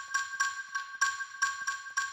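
Chiming mallet-percussion notes from the cartoon's musical path as the yellow stones are stepped on: the same note struck evenly, about four times a second, its ringing held steady between strikes.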